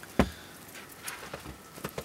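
A single sharp knock just after the start, then a few faint ticks: handling noise from a hand-held camera being turned round to face the person holding it.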